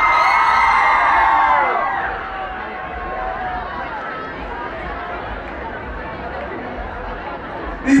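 Audience cheering and shouting loudly for the first second or so, many high voices at once, then settling into a steady murmur of crowd chatter.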